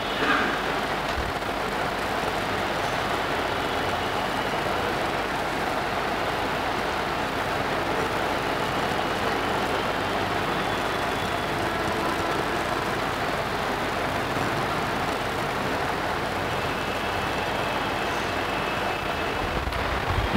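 Steady room noise in a lecture hall: an even, unbroken hiss and rumble with no speech.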